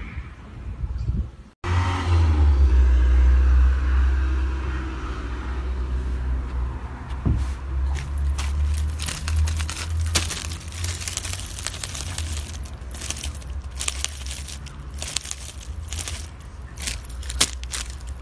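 Metallic jingling and rattling of a cat toy being shaken, in quick irregular clicks from about eight seconds in, over a steady low rumble.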